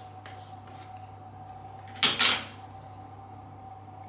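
A short, sharp clatter about halfway through, two quick knocks close together, as small objects are picked up or set down, over a steady low hum of room tone with a few faint clicks.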